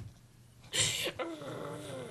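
A dog-like vocal sound: a sudden noisy burst about a second in, then a wavering pitched whine.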